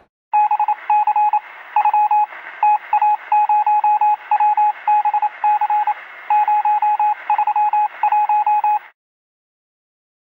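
Electronic beep tone keyed on and off in an irregular run of short and long beeps over a steady hiss, like Morse code. It cuts off abruptly near the end.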